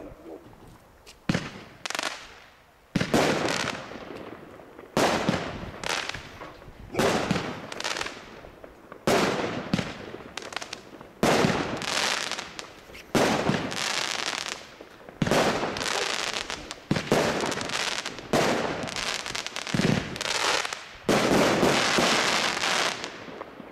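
A 25-shot consumer firework battery (cake) firing a shot every one to two seconds, each a sharp bang followed by a fading crackle of glittering stars.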